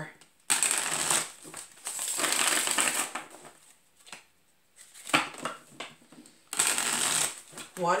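A deck of tarot cards being shuffled by hand: several spells of papery rustling and flicking, each a second or so long, with a few sharp taps of the cards about five seconds in.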